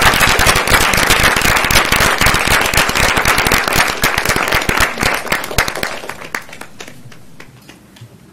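Audience applauding, full at first, then thinning to scattered claps and fading away over the last three seconds.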